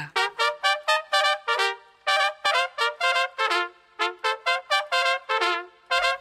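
Solo trumpet playing a quick phrase of short, separate notes, about four a second, in three runs with brief pauses about two and four seconds in.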